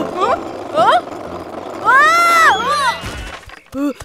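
A cartoon character's short rising cries and one long rising-and-falling cry, over children's background music. Near the end comes a low thud as the character falls.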